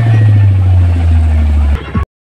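Very loud, deep bass from a truck-mounted sound-system speaker stack: one sustained low note that breaks off shortly before the end, followed by a brief final thump.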